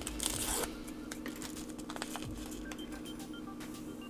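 A small instant coffee packet being torn open, a brief rip in the first half-second or so, followed by faint room tone with a low steady hum and a few small ticks.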